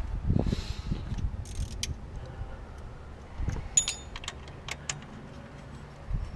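Scattered light clicks and metallic clinks of hand tools and loose metal parts being handled during belt work, one clink ringing briefly about four seconds in. There are low handling thumps in the first second.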